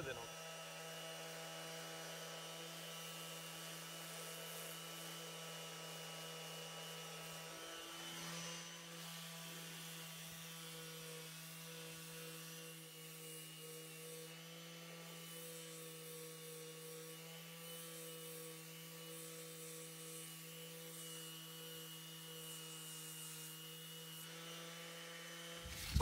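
Makita random orbital sander running steadily, heard faintly as a constant motor hum, sanding hardened flow-coat filler on a fibreglass boat hull back to shape.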